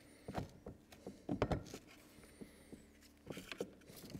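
Irregular light clicks and knocks of a metal blade cartridge and its bolt being worked into the plastic housing of a Cobra cordless scarifier by gloved hands, louder knocks coming about a second and a half in and again near the end.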